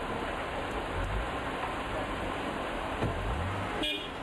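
Steady outdoor hiss with low rumbles of a car engine about a second in and again about three seconds in, and a short sharp click near the end.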